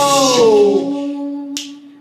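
Male a cappella voices holding a chord that fades away, one voice sliding down in pitch over a sustained low note, with a single sharp click about one and a half seconds in.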